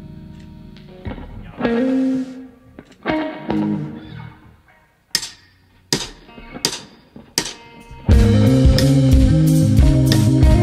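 Electric guitar, an SG-style with a Bigsby vibrato, playing a few sparse chords with pauses between them as a song begins. Four sharp, evenly spaced hits follow, and about eight seconds in the full rock band comes in loud.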